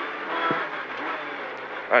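Engine and road noise inside the cabin of a Renault Clio N3 rally car at speed on a snowy stage: its engine running steadily under a wash of tyre noise, rising slightly about half a second in.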